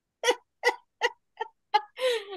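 A woman laughing out loud in five short bursts, evenly spaced a little under half a second apart, the last two fainter.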